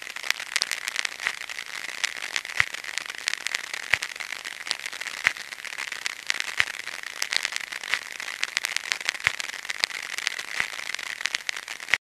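Record surface noise after the music has ended: a steady hiss full of fine crackles, with a stronger low click coming back about every second and a third.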